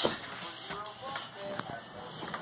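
Light shuffling footsteps and taps on carpet as a toddler runs over to a baby jumper, with brief high child vocal sounds in between.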